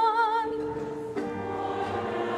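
Congregation singing in church. A single held note with vibrato ends in the first half second, then many voices come in together a little over a second in.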